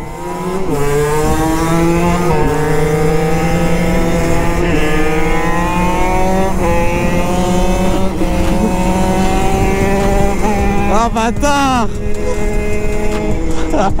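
Stock 50cc Derbi Senda X-Treme two-stroke engine under full throttle, its pitch climbing and dropping back at each of several gear changes, heard from the rider's seat with wind noise. Near the end the revs fall sharply and pick up again.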